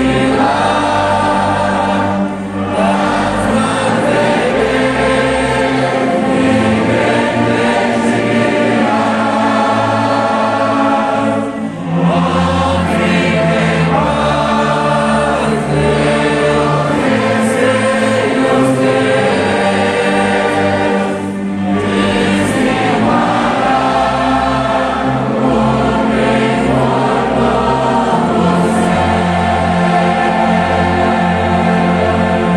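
A congregation singing a hymn together with a full church orchestra, violins and cellos among it. The music is sustained and full, with short breaks between phrases about two and a half, eleven and a half and twenty-one seconds in.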